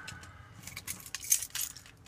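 A bunch of keys jangling and clinking as they are handled, with a sharp click about a second and a quarter in.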